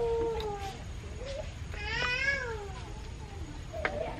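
Two drawn-out, high-pitched animal calls: a held one right at the start and a rising-then-falling one about two seconds in.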